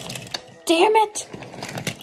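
Toy engines and trucks pushed by hand along wooden railway track, clattering with irregular clicks and knocks. A short vocal cry rises and falls about a second in.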